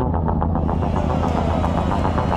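Soundtrack music with deep bass and a fast, steady beat. About half a second in, a hiss-like layer and a slowly falling tone join it.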